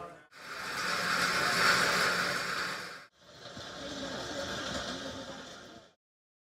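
Steady rushing machinery noise of the biomass boiler plant room, cut off briefly about three seconds in and then resuming with faint voices underneath.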